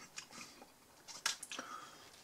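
A few faint, short clicks and soft handling noises at a table, from chewing and from paper and a knife being put down.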